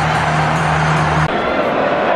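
Football stadium crowd noise with music carrying steady low tones underneath. The music cuts off abruptly a little over a second in, leaving only the crowd.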